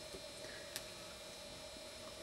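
Faint steady hum over a low hiss, with one small tick about three-quarters of a second in.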